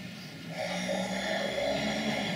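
A puppeteer imitating Darth Vader's mechanical breathing: a drawn-out, rasping breath through the mouth that begins about half a second in.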